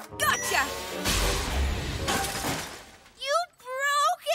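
Cartoon sound effect of a block of ice shattering: a loud crash about a second in that tails off over the next second and a half, over background music. A character's short voiced exclamation follows near the end.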